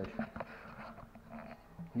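A few short knocks and faint rustling from a wooden paddle moving in a plastic barrel of steeping rice mash, over a steady low hum.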